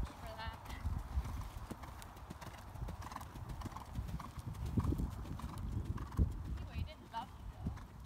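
Horse's hoofbeats at the canter on a sand arena: a run of dull, low thuds.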